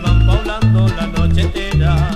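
Latin tropical dance music played by a small combo: an instrumental passage with a strong bass line in evenly spaced notes, about two a second, under busy melody lines.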